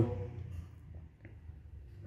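Quiet room tone with a few faint, short ticks of a small plastic-cased relay being handled in the fingers.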